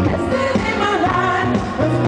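A live pop band playing, with female vocals singing over a steady bass line.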